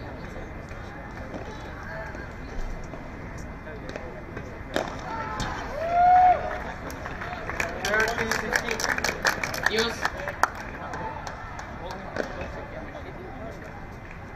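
Padel rally: the ball is struck with sharp pops off the rackets and court, with a single hit about five seconds in and a quick run of strikes near the middle-to-end as the players volley at the net. A short pitched sound about six seconds in is the loudest moment.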